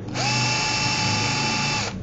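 Steady electric whine from a homemade electromagnet rig built from salvaged parts, switched on: the pitch slides up briefly as it starts, holds level, and cuts off just before the end.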